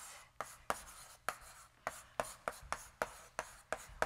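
Chalk writing on a blackboard: a quick series of short taps and scrapes, about three or four a second, as a heading is written out letter by letter.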